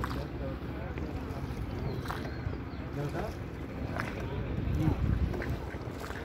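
Steady low rumble aboard a small wooden river boat, with scattered voices in the background.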